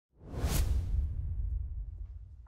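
Intro logo-reveal whoosh sound effect: a swoosh that peaks about half a second in over a deep low rumble, which slowly fades away.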